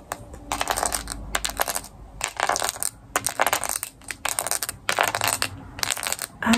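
Fingernails tapping and scratching on the plastic decorated back of a hairbrush close to the microphone, in irregular bursts of quick clattering clicks.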